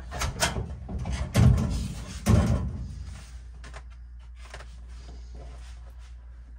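A cluster of knocks, then two heavier thuds about a second apart, as MDF console panels are handled and bumped against each other and the floor of the truck cab, followed by a few faint clicks.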